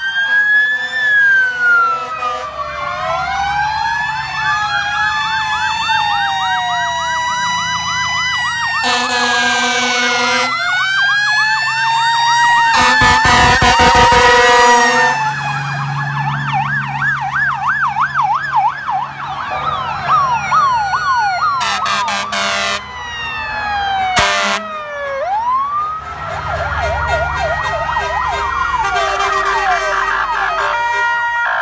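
Several fire truck sirens sounding at once, overlapping slow wails and fast yelps rising and falling in pitch, as the vehicles pass close by. Two long steady horn blasts stand out, about nine seconds in and again around thirteen seconds in.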